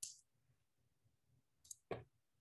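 Near silence, broken near the end by two short clicks of a computer mouse button.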